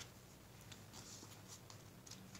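Near silence: room tone with a faint steady hum and a few soft rustles of tarot cards being handled.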